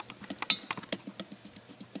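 Light, irregular metallic clicks and taps of a measuring gauge being worked inside the exhaust port of a 1.8T cylinder head, with the loudest click about half a second in.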